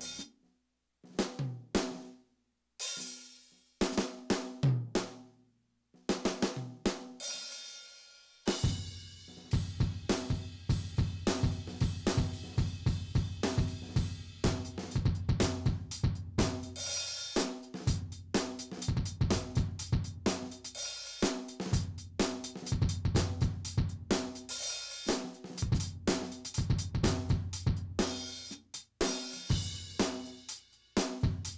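Simmons SD1250 electronic drum kit on its 'classic rock' kit sound, heard through the module's output: separate hits and short fills with ringing decays and gaps for about the first eight seconds, then a steady rock beat with bass drum, snare, hi-hat and cymbals, broken by brief pauses.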